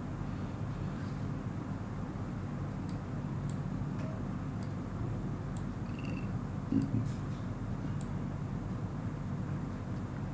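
Steady low hum with a few faint, scattered clicks.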